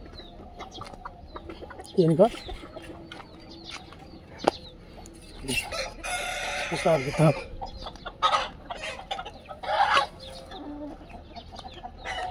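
A flock of desi chickens clucking and calling in short bursts, with a louder, longer call about six seconds in.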